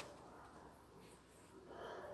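Near silence: faint outdoor background, with a brief click at the very start.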